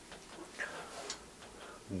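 A few faint, irregular soft clicks over quiet room tone.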